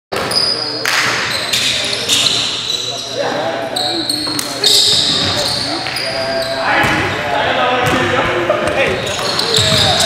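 Live sound of an indoor basketball game: sneakers squeaking on a hardwood gym floor again and again, the ball bouncing, and players' voices calling out, all with the echo of a large hall.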